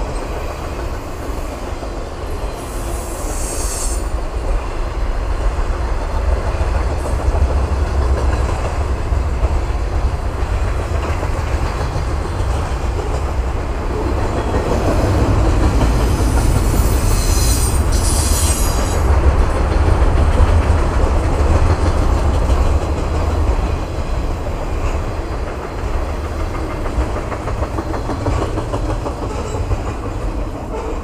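Double-stack intermodal container cars of a freight train rolling past: a steady low rumble of steel wheels on rail, with a high squeal from the wheels about three seconds in and again around seventeen seconds in.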